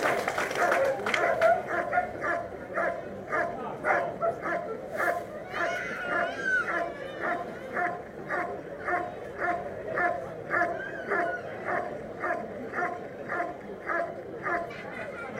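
German Shepherd Dog barking steadily and rhythmically at a motionless helper, about two barks a second: the guarding bark of protection work, holding the helper in place until the handler comes.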